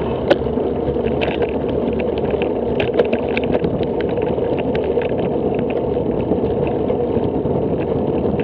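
Steady wind noise and road rumble on the microphone of a camera riding on a moving bicycle, with scattered light clicks and rattles.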